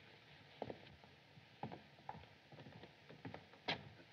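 A few faint footsteps on a hard floor, irregularly spaced, over the steady hiss of an old film soundtrack, with a slightly louder knock just before the end.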